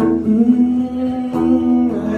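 A man holding long, wordless sung notes over a strummed acoustic guitar.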